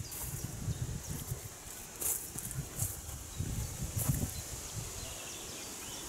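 Outdoor ambience while walking through a meadow: soft footsteps and rustling of plants, with irregular low rumbles on the microphone.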